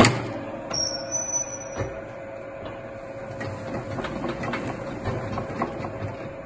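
Fortuna Automat bun divider-rounder running: a steady motor hum under irregular rattling and knocking from its mechanism. A loud metallic clank comes right at the start.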